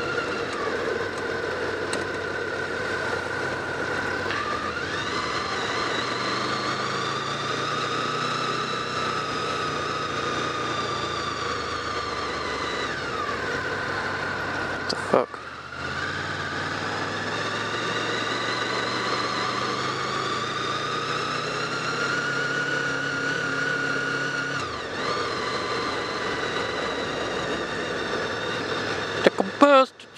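Honda VFR800's V4 engine and wind noise heard from a helmet camera while riding in traffic, with a whine that rises in pitch as the bike speeds up and falls as it slows, twice. A short knock and a brief drop in level come about halfway through.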